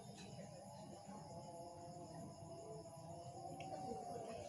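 Faint, steady chirring of crickets at night.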